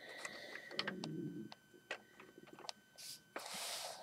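Plastic LEGO bricks being handled as a built model is picked up and repositioned: a scatter of small clicks and knocks, then a brief rushing hiss near the end.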